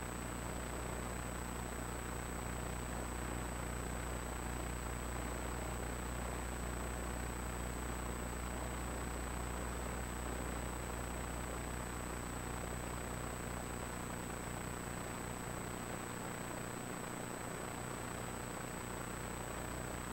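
Steady low hum with a thin high-pitched whine running along with it, unchanging throughout.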